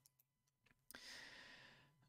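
Near silence, then about a second in a faint mouth click followed by a soft in-breath lasting most of a second, fading out.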